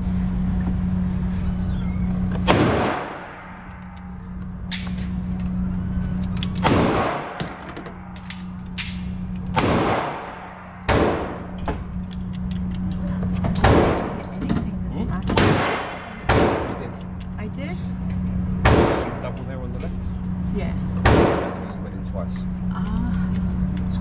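Gunshots in an indoor shooting range: about nine loud reports at irregular intervals, each followed by a short echo off the walls, with smaller clicks between them. A steady low hum runs underneath.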